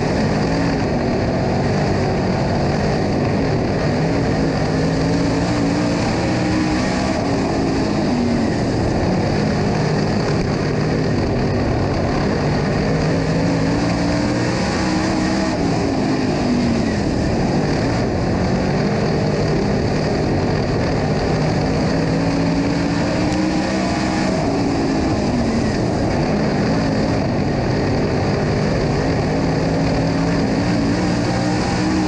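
Dirt late model race car's V8 engine at racing speed, heard from inside the cockpit. The note climbs down the straights and drops off into the turns, several times over.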